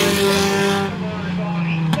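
Several pure stock race cars' engines running at speed around the track, a steady droning pack of engines. About a second in the sound turns duller and a little quieter.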